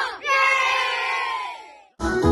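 A group of children shouting together in one long drawn-out cheer that trails off near the end.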